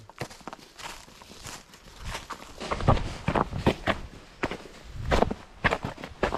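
Hikers' footsteps crunching through dry fallen leaves and icy patches on a mountain trail, in irregular steps that get louder about two seconds in.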